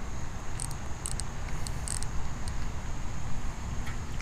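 Star drag of a baitcasting reel being turned to loosen it against a hooked fish, giving a few faint, irregular ticks over a steady low rumble.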